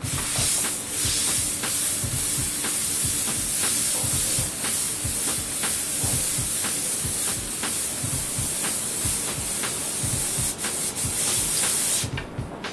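Airbrush spraying paint onto a T-shirt: a steady, unbroken hiss of air and paint while the trigger is held down.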